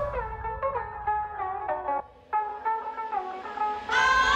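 A DJ's turntable mix playing a plucked-string melody with the drums dropped out and the highs cut away, so it sounds muffled. The music breaks off briefly about halfway through, then the melody comes back.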